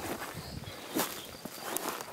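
Footsteps through pasture grass: a few soft steps.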